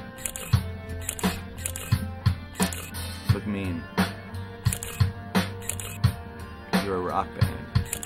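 Rock music: a drum kit keeps a steady beat of about three hits a second under a sustained bass line and guitar, with a couple of bending pitched lines partway through.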